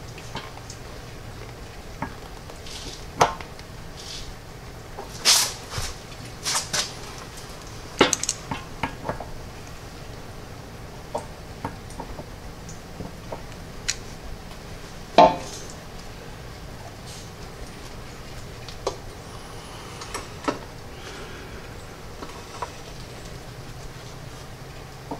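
Metal parts clinking and knocking irregularly as an engine-to-hydraulic-pump shaft coupler is handled and worked into place, with the loudest knock about fifteen seconds in.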